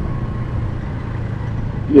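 Motorcycle engine running at a steady, even speed while riding, heard from on the bike, with wind and road noise over it.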